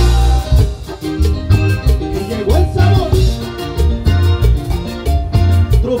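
Live cumbia band playing with a steady beat: accordion melody over electric bass, electric guitar and drum kit.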